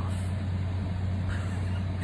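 A steady low hum with a constant background hiss and no other events.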